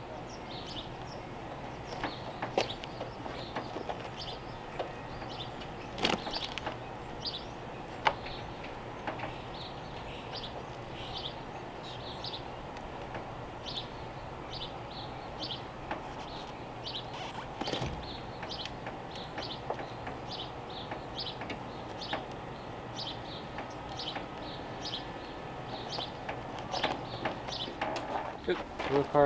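A few sharp clicks and knocks from an upholstered door card being pressed and fitted onto a car door, over a steady background with short bird chirps repeating throughout.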